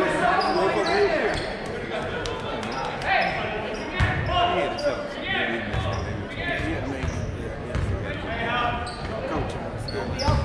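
A basketball bouncing on a gym floor during play, with short high squeaks and a chatter of voices from players and the crowd, in an echoing gymnasium.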